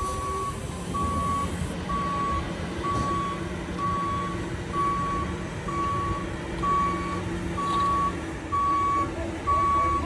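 Trolley bus reversing alarm beeping steadily, about one beep a second at a single high pitch, with a low steady hum underneath.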